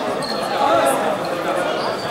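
Several people talking indistinctly at once in a large sports hall, their voices echoing.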